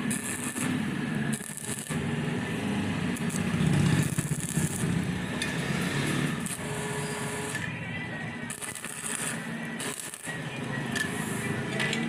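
Arc (stick) welding on steel square tube: the arc crackles and hisses in short spells over a low buzz.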